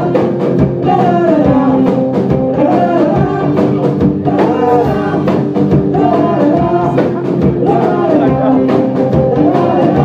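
Live rock band playing: electric guitars and a drum kit, with a bluesy guitar riff over a steady drum beat.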